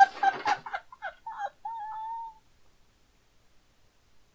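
A woman's high-pitched cackling laughter in quick bursts, ending in a drawn-out squeal a little past two seconds in.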